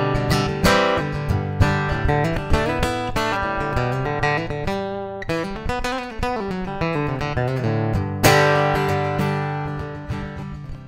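Acoustic guitar played through a Fishman PowerTap Matrix Infinity pickup system, its undersaddle pickup blended with the TAP body sensors. Picked notes and chords ring out one after another, with one harder struck chord about eight seconds in that rings and fades.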